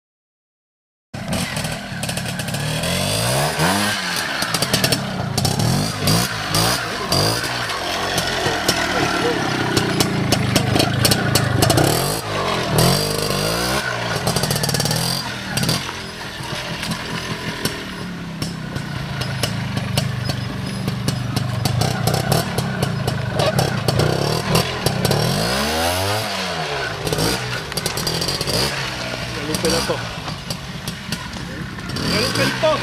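Trials motorcycle engine revving up and down over and over as it is ridden slowly through a rocky section, its pitch rising and falling with the throttle. It starts about a second in.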